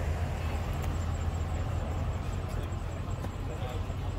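Outdoor ambience: a steady low rumble with faint background voices of people around.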